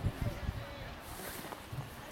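Indistinct talk of people near the microphone, strongest in the first half second and then quieter, over a faint outdoor background.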